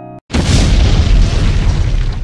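Explosion sound effect: a loud boom that starts suddenly about a quarter second in and dies away over the next two and a half seconds.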